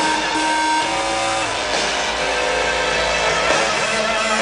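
A live pop-rock band playing loud through a concert PA, heard from within the audience, with long held notes over a steady full band.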